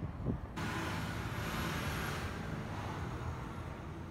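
Outdoor street and traffic noise picked up by a phone microphone, cutting in abruptly about half a second in and swelling briefly before easing off. The abrupt cut-in is typical of a steam-damaged phone microphone whose sound drops in and out.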